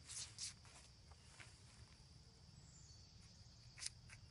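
Near silence: a steady, high-pitched insect drone, with a few faint short rustles or scrapes. The loudest of these comes near the end.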